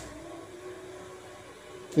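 A faint steady hum over low room noise, with no distinct events.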